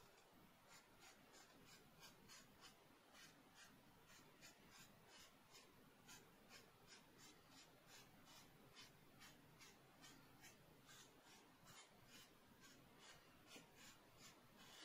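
Faint pencil strokes scratching on drawing paper in a quick, even rhythm of short strokes, about three a second, as shading is laid down.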